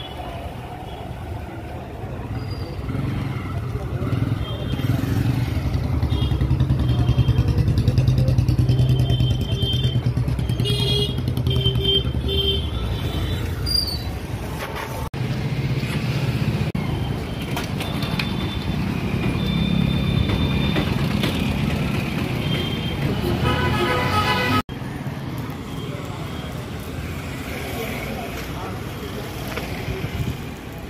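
Busy street traffic: motorcycle and auto-rickshaw engines running close by, loudest a few seconds in, with short horn honks about halfway and again near the end, and people talking in the background.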